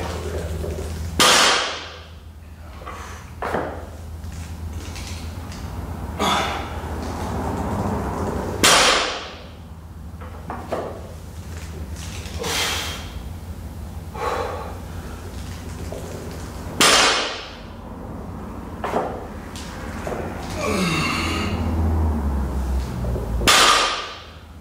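Loaded barbell with rubber bumper plates set down on a rubber floor mat between deadlift reps: four loud thuds, about seven to eight seconds apart, with fainter sounds between.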